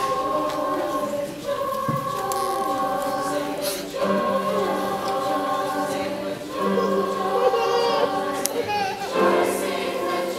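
Mixed youth choir singing, holding long notes in phrases with short breaks about every two and a half seconds.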